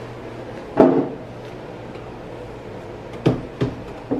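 A short vocal sound about a second in, then two light knocks about a third of a second apart near the end: a wooden picture frame being handled against a bathroom wall.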